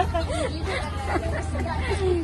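Several people talking at once in an indistinct babble of chatter, over a steady low hum.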